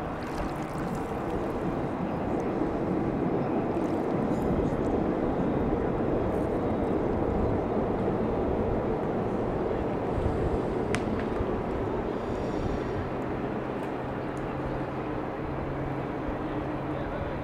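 Steady outdoor waterfront ambience: a low, continuous hum of distant motors under a rushing water-and-city noise, swelling slightly in the middle. A brief thin high chirp sounds about eleven seconds in.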